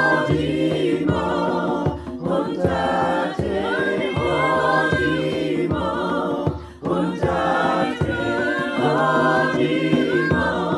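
Choir of men's and women's voices singing a gospel song in harmony, with a djembe hand drum beating under the voices.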